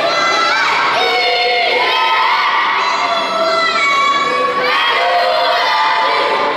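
A group of children shouting and cheering together at a youth baseball game, many voices overlapping in long, drawn-out calls without a break.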